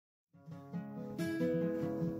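Music with acoustic guitar fading in about a third of a second in, held notes over a steady repeating low pulse, turning fuller with a new chord a little over a second in.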